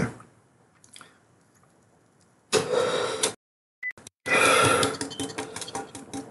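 A man clearing his throat: once about two and a half seconds in, then again in a longer, fading bout from about four seconds in.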